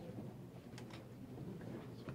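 Quiet room tone with a faint low murmur, and two brief soft clicks a little under a second in.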